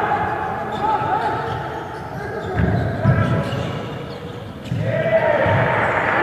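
Basketball bouncing on an indoor court during play, a few dull thuds, with players' voices calling out over them.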